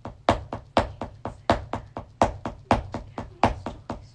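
Drumsticks playing a steady beat of sharp strokes, about four a second, with every other stroke louder.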